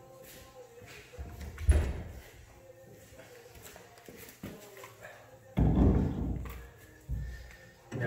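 Dull thuds and knocks of a steel front spindle being carried in and offered up to the car's strut and lower control arm. A small thump comes early, and two heavier thuds follow in the last third, each dying away over about a second.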